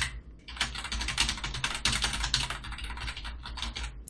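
Fast typing on a computer keyboard: a quick, steady run of key clicks that begins about half a second in.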